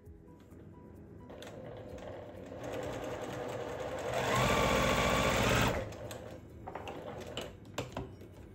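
Electric sewing machine stitching a patchwork seam, running at its fastest for about a second and a half in the middle, then stopping.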